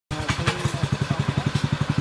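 Small engine of an Oshima multi-purpose mini rotary tiller running steadily at a fast, even beat, about a dozen firing pulses a second.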